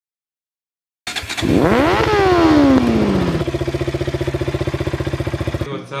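Motorcycle engine revved once, its pitch rising quickly and then falling back, settling into a steady pulsing idle that cuts off suddenly near the end.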